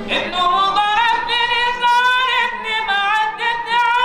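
A solo male voice sings a mawlid recitation in Arabic, unaccompanied, in a high register through a microphone. It enters with a rising glide, then holds long notes with ornamented, wavering turns.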